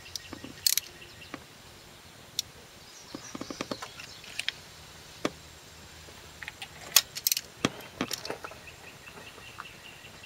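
Socket ratchet clicking as it is rocked back and forth on a seized two-piece spark plug that barely turns: a quick run of small ratchet clicks about three seconds in, and separate sharp metallic clicks scattered through the rest.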